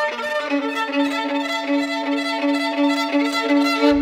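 Music led by a violin, with a low note played in repeated pulses about three times a second beneath higher string lines. It cuts off sharply near the end.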